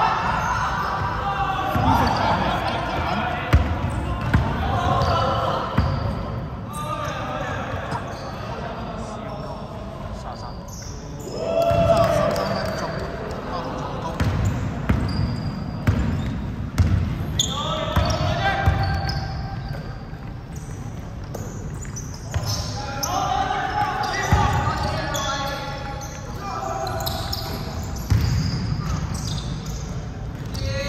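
A basketball bouncing on a wooden gym floor during play, with players' voices calling out at intervals, echoing in a large indoor hall.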